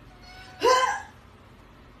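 A single short, high-pitched cry that rises and falls in pitch, a little over half a second in, over faint room noise.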